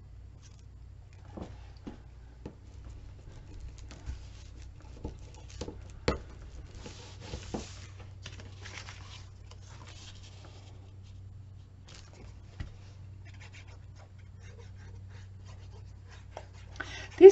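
Paper and cardstock being handled on a cutting mat: soft rustling, sliding and scraping as cut pieces are pressed down and moved, with scattered light taps, the sharpest about six seconds in. A steady low hum runs underneath.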